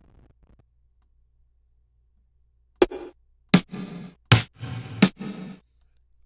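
A sampled snare drum in Maschine, struck four times about three-quarters of a second apart after a near-silent start. It is played on keys an octave or more up its keyboard zone, so it is pitch-shifted as the root key is sought, but it still sounds like a snare.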